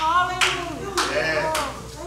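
A few scattered hand claps from the congregation, with faint voices responding in the background.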